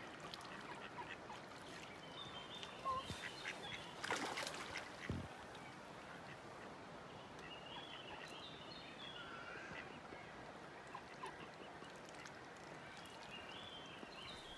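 Faint calls of a group of mallard ducks, with a few soft clicks and knocks clustered around three to five seconds in.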